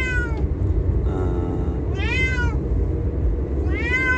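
Three meows about two seconds apart, each rising then falling in pitch, over the low rumble of the car inside its cabin.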